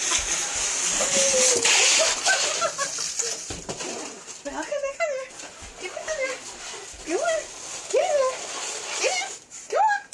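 A cardboard box scraping and sliding over a parquet floor as it is pulled along on a leash, for roughly the first four seconds. After that come short rising vocal calls, about one a second.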